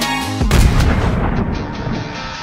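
Background music broken by a deep boom about half a second in, which rumbles and fades away over the next second before the music carries on.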